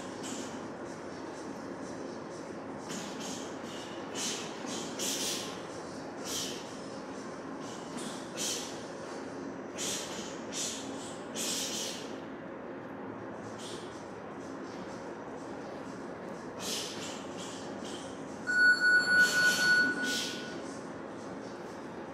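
Boxers shadowboxing, with short sharp hissing exhalations at irregular intervals over a steady ventilation hum. About eighteen seconds in, an electronic boxing round timer beeps rapidly several times, the loudest sound here, marking the end of a round.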